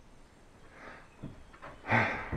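Slow, careful footsteps on an old, weathered wooden floor: a few soft thuds, the loudest just before the end.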